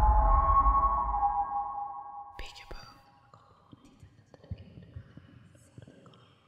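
Horror-film scare sting dying away: held ringing tones over a low rumble fade out over about two and a half seconds. It leaves faint whispering and a few scattered small clicks.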